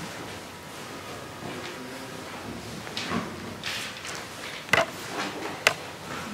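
Quiet hall room tone with a few small knocks and clicks, the sharpest two near the end about a second apart.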